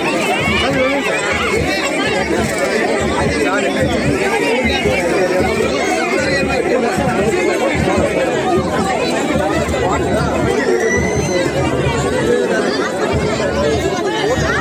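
Dense crowd chatter: many people talking at once around the display, with no single voice standing out.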